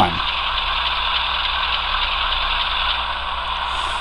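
Sound decoder in an HO-scale model diesel locomotive playing a steady diesel engine drone through the model's small speaker as the locomotive runs in reverse, thin and lacking low end.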